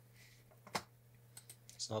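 A few sharp clicks from a computer mouse and keyboard, the loudest just before halfway and two smaller ones about three quarters in, over a low steady electrical hum.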